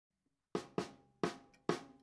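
Drum kit strokes: four sharp hits, the first about half a second in, each dying away quickly, as the drum lead-in at the start of the piece.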